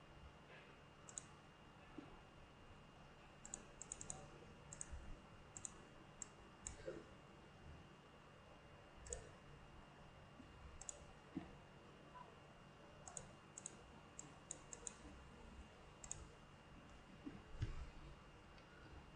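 Faint, irregular computer mouse clicks, several in quick runs of two or three, over a low steady hum.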